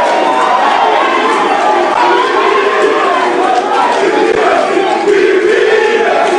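A large crowd cheering and shouting, loud and without a break.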